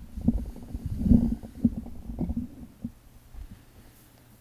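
Handling noise at a wooden lectern: a run of low, muffled thumps and bumps as a book is moved about, loudest about a second in and dying away after about three seconds.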